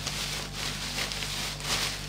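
Clear plastic food packaging crinkling and rustling as it is handled, over a steady low hum.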